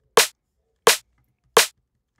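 Drum and bass loop at 172 BPM playing back from a DAW: three short, crisp snare hits about 0.7 s apart, one on every other beat, with no kick drum between them.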